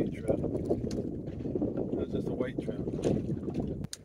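Wind rumbling on the microphone aboard a drifting fishing boat, a steady rough low rumble, with a few light clicks. The rumble drops away suddenly at the very end.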